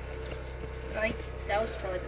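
A steady low mechanical hum, with two short bursts of voice about a second and a second and a half in.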